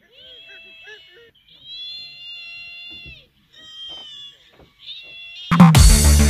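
A few faint, drawn-out, high-pitched wailing cries, one held for over a second. Near the end, loud electronic dance music with a heavy bass beat suddenly starts.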